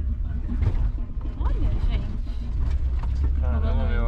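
Volkswagen Kombi driving, its engine and road noise a steady low rumble inside the cab, with voices talking over it near the end.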